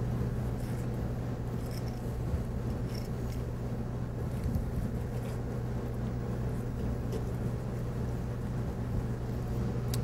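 Steady low hum of background machinery, with faint scrapes and small clicks of a knife trimming silver skin from a monkfish tail.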